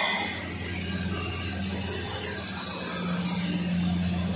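Automatic cutting machine for round wooden brush-handle bars running with a steady low electric hum; no cutting strokes stand out.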